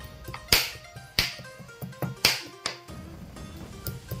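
The back of a cleaver hammering slices of raw pork tenderloin against a cutting board to tenderise them: four sharp strikes at uneven intervals, over background music.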